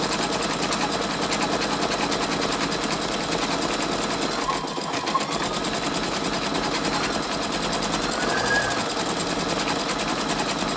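Brother Innovis 2800D embroidery machine stitching out a design at speed: a steady, rapid needle-and-hoop clatter that dips briefly a little before halfway, then carries on.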